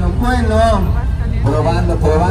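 Voices of people in a busy public plaza, over a steady low rumble of outdoor background noise.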